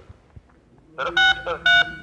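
Two short electronic beeps about half a second apart, starting about a second in, with a voice under them.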